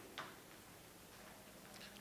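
Near silence: faint room tone with a low steady hum, and one faint click just after the start.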